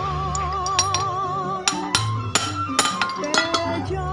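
Background music, a melody with a wavering vibrato over a bass line. Several sharp metallic clinks sound over it, most in the second half, as the metal parts of a small chainsaw's crankshaft and connecting rod are handled.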